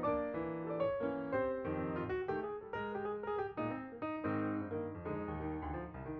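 Background piano music: a flowing melody of single notes over soft chords.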